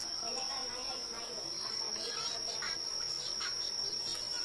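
Steady high-pitched cricket trill, with faint wet squelches of hands kneading marinated chicken pieces in a plastic bowl.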